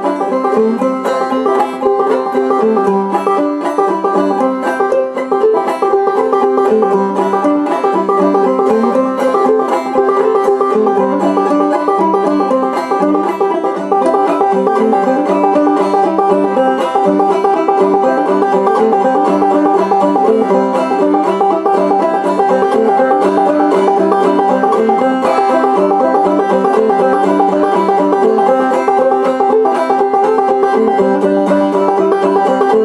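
A 12-inch Spartan silverspun fretless banjo, with a nickel-spun cherry rim and a nickel-clad brass tone ring, played solo in a steady, continuous run of plucked notes over a repeating tune.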